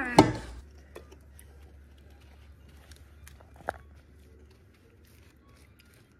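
Faint clicks and rustles of a spatula working a sticky cereal and marshmallow mixture, scooping it from a pot and pressing it into an aluminium foil pan. One sharper knock comes about three and a half seconds in.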